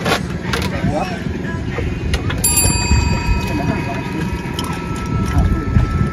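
Spinning reel being cranked with scattered mechanical clicks as a hooked milkfish is reeled in, over indistinct background voices and a steady low rumble.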